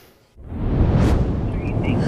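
Low, steady rumble of road and engine noise inside a moving car, coming in about a third of a second in after a brief dropout.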